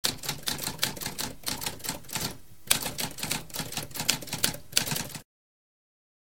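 Typewriter sound effect: a rapid run of key strikes, a short pause about two and a half seconds in, then more typing that stops suddenly about five seconds in.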